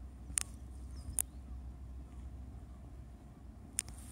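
Quiet outdoor ambience: a low steady rumble with three brief sharp clicks, about half a second in, just after a second, and near the end.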